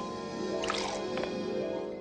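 Background music score, sustained notes, with rain falling underneath.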